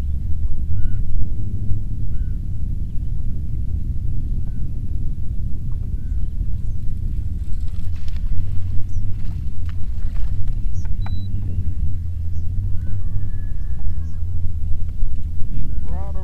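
Wind buffeting the microphone in a steady low rumble. Faint short chirps sit above it, with a few light clicks near the middle.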